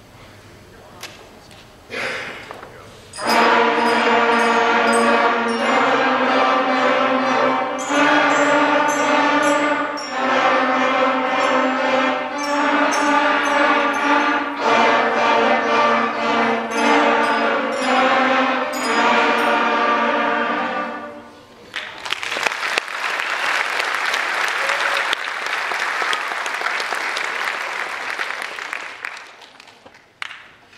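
School concert band playing wind and percussion in short phrases that pass between the two halves of the band, one half resting while the other plays. The music stops about two-thirds of the way through and is followed by several seconds of audience applause.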